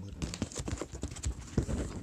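Handling noise: a run of irregular soft knocks and bumps, more of them in the second half.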